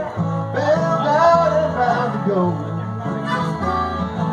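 Live band music: electric and acoustic guitars and bass playing a blues, with a wavering lead line that bends in pitch over the chords.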